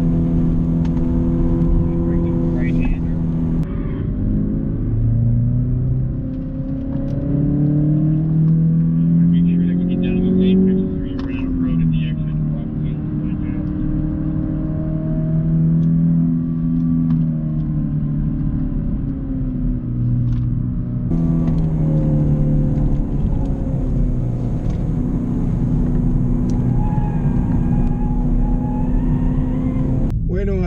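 2019 Chevrolet Camaro's 2.0-litre turbocharged four-cylinder engine, heard inside the cabin while being driven on a track. Its pitch climbs under acceleration, drops back about a third of the way in, then holds and wavers through the rest of the lap.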